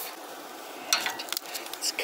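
Red peppers sizzling on a barbecue grill, with a few sharp clicks of metal tongs against the grill grate from about a second in.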